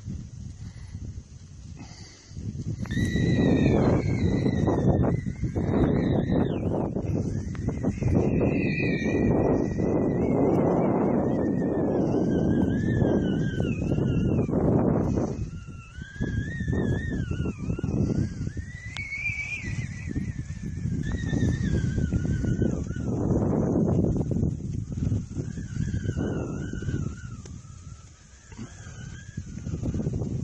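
Gusty wind buffeting the microphone, rising about two seconds in, easing briefly midway and dying away near the end. A wavering whistle rises and falls in pitch with the gusts.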